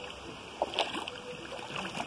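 Bare feet wading through a shallow stream, the water sloshing and splashing around them with each step, with a few sharper splashes a little before and after one second in.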